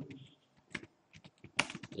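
Computer keyboard keys being typed, a run of short sharp keystrokes in quick succession, getting denser in the second half.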